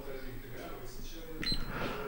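Faint voices talking in the background during a quiet pause, with a short faint high tone about one and a half seconds in.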